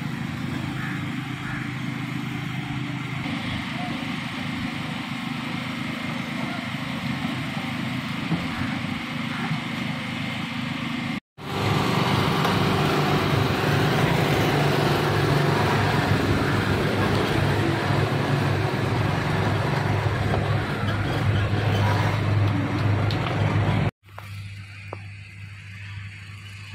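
Volvo excavator's diesel engine running steadily as it works. After a cut about 11 seconds in, louder, steadier street traffic noise with vehicle engines takes over.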